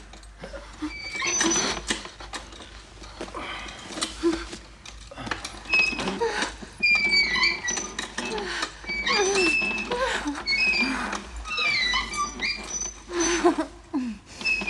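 An animal's many short, high cries that rise and fall in pitch, coming thickest in the middle and near the end.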